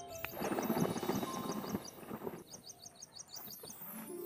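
Water sloshing and splashing for about two seconds as a blanket is pushed down into a bucket of soapy water to soak, over background music and chirping birds.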